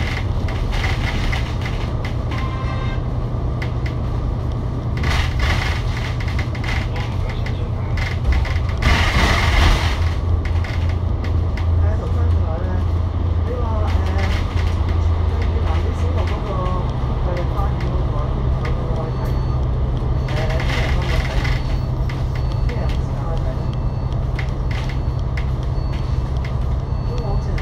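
Interior sound of an Alexander Dennis Enviro500 MMC double-decker bus cruising at highway speed, its Cummins L9 diesel engine and ZF automatic gearbox making a steady drone under road and cabin noise. There is a brief rush of noise about nine seconds in, and the engine note steps up in pitch a little past halfway.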